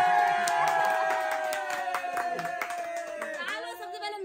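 A group clapping while a voice holds one long drawn-out cheering note that slowly drops in pitch and fades out about three and a half seconds in. Short bursts of voices follow near the end.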